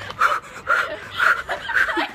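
A woman panting hard close to the microphone, about two breaths a second, out of breath from running down a long flight of stone stairs.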